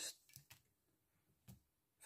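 Near silence: room tone, with a few faint short clicks around half a second in and one more about a second and a half in.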